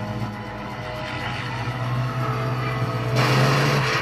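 A propeller fighter plane's engine drone from a war-film soundtrack, played back through a speaker. The drone holds steady and grows a little stronger, and a louder rushing noise swells in about three seconds in.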